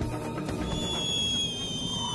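A high-pitched whistle comes in about half a second in and holds steady over background music: an ancient Chinese whistling arrow in flight.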